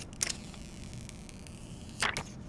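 A short crinkle of thin plastic protective film being peeled off a smartphone's screen about a quarter second in, followed by faint handling rustle.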